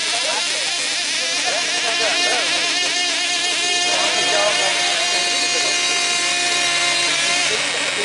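Small 2.5 cc model diesel engines of F2C team-race aircraft running at high revs during the warm-up. The pitch wavers as the engines are adjusted between about two and four seconds in.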